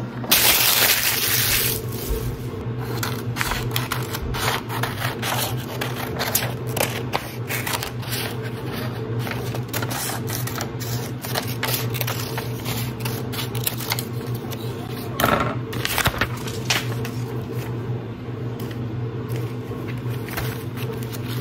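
Sheets of paper rustling and crackling as they are handled, with a loud rustle about a second long near the start, another shorter one about three-quarters of the way through, and many small crackles and taps in between. A steady low hum lies underneath.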